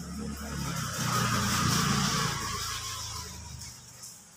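A motor vehicle passing by on a wet street: its engine and tyre hiss swell to a peak about two seconds in, then fade away, over the steady hiss of rain.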